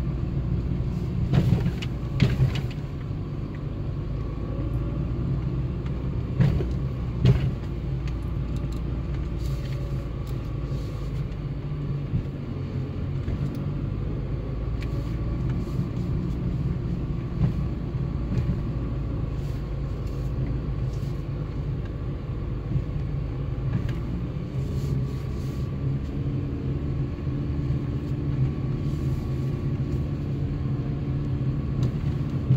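Car's engine and tyres heard from inside the cabin, driving slowly over a rough dirt road: a steady low hum, with a few sharp knocks and rattles about two seconds and again about seven seconds in.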